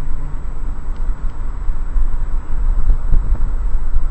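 Steady, loud low rumble of a car driving along, heard from inside the cabin, with road and wind noise.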